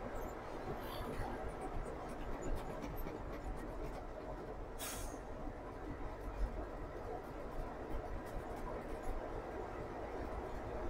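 Steady low engine and road rumble heard inside a moving truck's cab, with a brief hiss about five seconds in.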